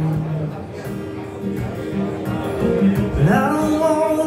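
Live solo acoustic guitar with a man singing. A held sung note ends about half a second in, the guitar plays on, and the voice slides up into a new line near the end.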